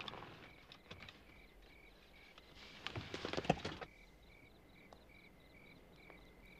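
Crickets chirping in a steady, even rhythm, about two to three chirps a second. About three seconds in comes a brief rustling with a few sharp clicks.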